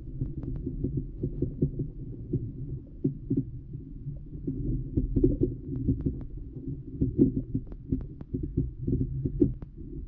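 Muffled underwater sound picked up by a GoPro Hero8 Black's microphone submerged in a river: a steady low rumble of moving water with many small irregular clicks and knocks.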